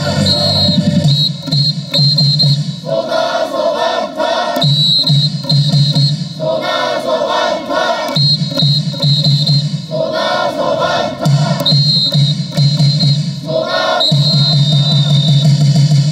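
Cheer song played over stadium loudspeakers, with a crowd chanting along in short shouts that repeat every couple of seconds.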